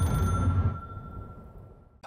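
Closing sound of a music video's soundtrack: a low rumble with a single steady high tone held over it. Both fade out through the second half.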